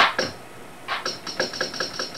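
Ensoniq SQ-2 keyboard playing one short percussion sample from a user-built drum kit, hit in quick succession on keys set to the same sound and pitch. The run of light, even ticks, about six a second, starts about a second in, played fast for a tambourine-style roll.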